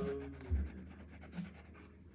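Pencil drawing on sketchbook paper: soft scratching of strokes, with a low thump about half a second in.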